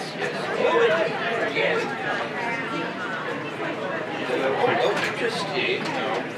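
Indistinct talking and chatter, no clear words.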